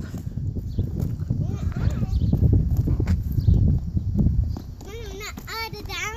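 Low, uneven rumbling on the microphone for about four seconds, then a child's high voice talking near the end.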